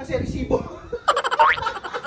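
A man laughing in rapid 'ah, ah, ah' bursts. About a second in, an edited-in comedy sound effect comes in suddenly with a rising pitch and runs for most of a second.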